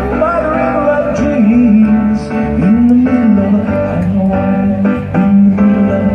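Live amplified pop song: a singer holding long, gliding notes without clear words over steady chordal accompaniment.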